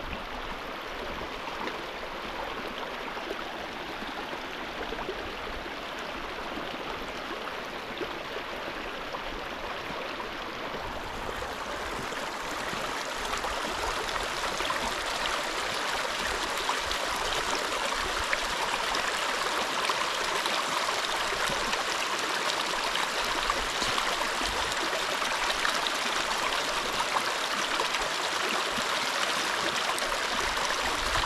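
A small rocky mountain stream running and splashing over stones, a steady rushing sound that grows louder about twelve seconds in.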